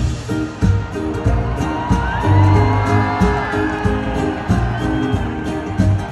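Live country band playing an instrumental passage with acoustic guitars, bass and drums over a steady beat. In the middle, a high note glides up and then down above the band.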